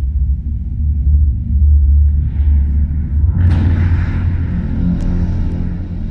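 Deep, steady rumbling sound effect from a planetarium show's soundtrack, with a rushing whoosh swelling in about three and a half seconds in as the picture moves to solar loops and flares.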